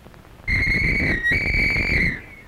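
A whistle blown in one long, steady, high blast, starting about half a second in, with a brief dip in pitch midway before it carries on and stops.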